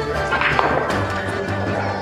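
Background music: sustained, slightly wavering instrumental tones at a steady level.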